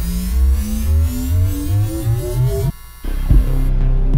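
Electronic background music: a rising synth sweep over a low hum that cuts out suddenly near three seconds in, followed by a low pulsing beat.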